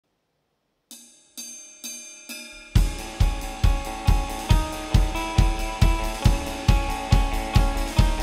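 Rock band starting a song live: after a moment of silence come four lighter struck hits with ringing notes, about half a second apart. A little under three seconds in the full band comes in, drum kit with a kick on each beat about twice a second and cymbals, under sustained guitar notes.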